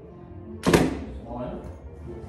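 A single sharp knock or thunk about two-thirds of a second in, over faint background music.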